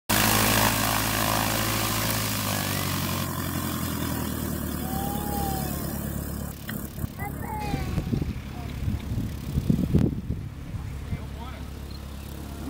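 Single-engine light propeller plane's piston engine running steadily as the plane taxis away on grass. Its sound gradually fades, with a few irregular low bumps about eight to ten seconds in.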